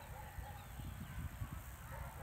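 Faint, short bird calls and chirps over a low, uneven rumble of wind on the microphone.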